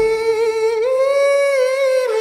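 A solo voice in a pop song holds one long sung note, stepping up a little in pitch about a second in, with the backing instruments dropped out.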